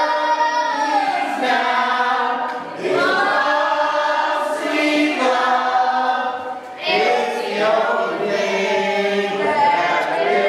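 A group of voices singing a song together in phrases, with two short breaks between them.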